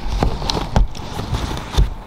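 Camera handling noise as a camera is set in place: several heavy low thumps and bumps on the microphone, with rubbing and rustle in between.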